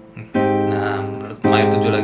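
Nylon-string acoustic guitar (Taylor 214ce-N) sounding two jazz seventh chords about a second apart, each left to ring and fade: a major-seventh chord moving down a fret to a minor-seventh chord in a descending chromatic progression.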